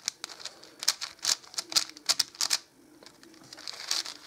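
A Moyu 5x5 speed cube being turned by hand: a quick, irregular run of plastic clicks and clacks as its layers are twisted, with a brief pause about three seconds in.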